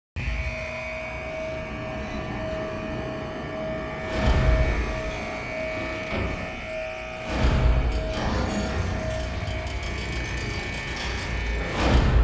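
Dark, suspenseful trailer score: held steady tones over a low drone, with deep booming hits about four and seven seconds in and a swell just before the end.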